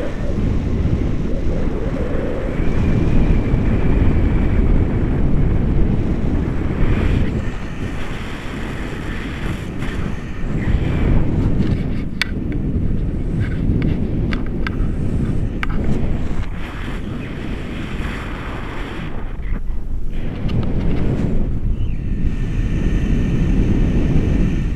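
Rushing airflow of a paraglider in flight buffeting the camera microphone: a loud, gusting rumble that swells and eases every few seconds.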